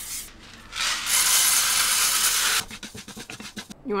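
Aerosol rice bran oil spray hissing into a frying pan: a brief spurt as it begins, then a steady spray of about a second and a half, followed by a few light clicks.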